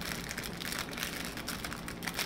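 Plastic packaging crinkling and crackling in a dense, irregular run as a rolled diamond-painting canvas and its bag are handled.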